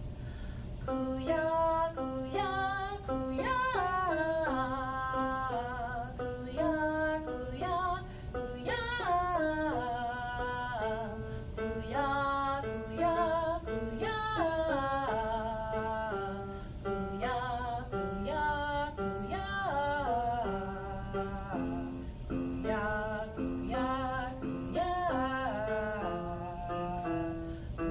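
A woman singing a melody of short notes that step up and down in pitch, with a steady low hum beneath.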